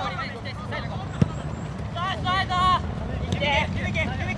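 Soccer players shouting and calling to each other across the pitch, loudest in two calls in the second half, over a steady low outdoor rumble. A single sharp ball kick about a second in.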